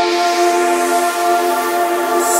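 Nightcore edit (sped up and pitched up) of a melodic dubstep remix: held synth chords with no bass or beat yet.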